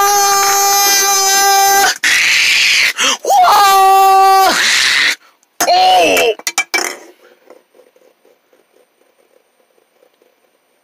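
A high voice yelling long, steady 'aaah' cries, three in turn, the last one shorter and falling in pitch; a few quick clicks follow, then only faint soft taps.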